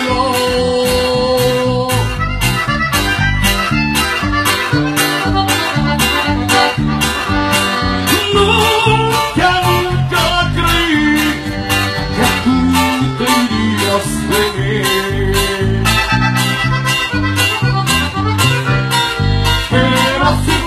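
Live regional Mexican band music: a strummed guitar-type stringed instrument and bass over a steady drum beat, with sustained melody notes on top.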